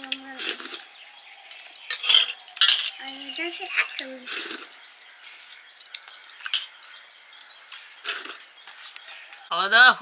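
Stainless steel plates and a serving bowl clinking now and then during a meal eaten by hand, a sharp clink every second or two.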